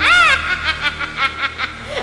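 A cartoon character's voice laughing: a rising-and-falling cry at the start, then quick repeated chuckles, with music underneath.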